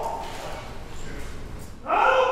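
Shouted drill commands in a large hall. At the start one drawn-out command falls in pitch and dies away into the hall's echo, and near the end the next command starts loudly.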